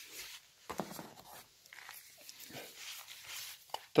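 Faint rustling of packing paper and plastic, with a few light knocks as plastic canisters of cleaning powder are lifted out of a cardboard box.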